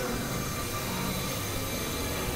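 Experimental electronic noise drone: a steady, dense wash of synthesizer noise with faint low held tones underneath.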